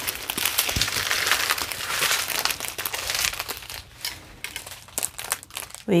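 Thin plastic bags of diamond-painting drills crinkling as they are handled. The crinkling is dense for the first few seconds, then thins to a few scattered crackles.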